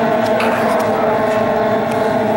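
A pack of small outboard-powered J-class racing hydroplanes running at speed, a steady drone of several overlapping engine tones.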